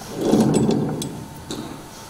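Microphone handling noise: a loud, rumbling rustle with a few sharp clicks, lasting about a second, as a stand-mounted microphone is grabbed and adjusted.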